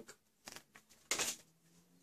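Brief rustles of a paper instruction sheet being handled and put down: a faint one about half a second in, then a louder one just after a second.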